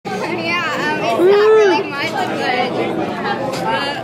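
Several people chattering at once in a large, echoing room, with one voice calling out a loud drawn-out note that rises and falls about a second and a half in.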